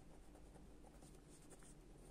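A pen writing a word on a paper notebook page, faint.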